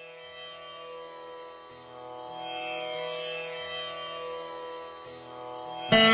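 Carnatic veena music opening on a soft, steady drone that slowly swells. Just before the end, loud plucked veena notes with sliding, bending pitch (gamakas) begin.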